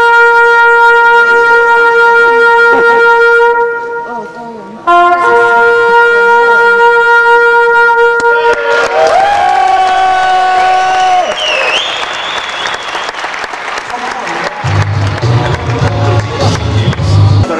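A reedy Thai oboe-like pipe (pi) of muay thai ring music holds long, steady notes, with a short break about four to five seconds in. It then moves into a wavering melody as crowd voices rise, and a low hum comes in near the end.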